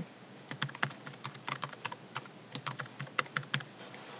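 Typing on a computer keyboard: a quick, uneven run of key clicks starting about half a second in and stopping shortly before the end.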